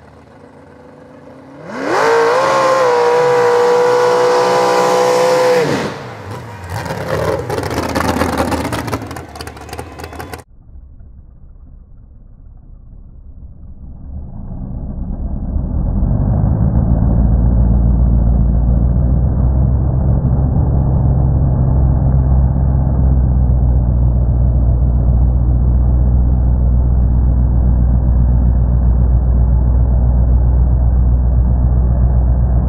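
Mud-bogging truck engine revving hard, climbing to a high held pitch for a few seconds, then rising and falling as the truck charges through the mud pit. About ten seconds in the sound cuts off abruptly, and a dull, low, steady rumble builds up and holds.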